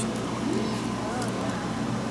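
A steady low machine hum with faint, indistinct voices over it.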